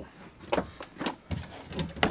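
A few light knocks and clatters as a small plastic toolbox is lifted out of a caravan's front locker and set down on the locker's edge.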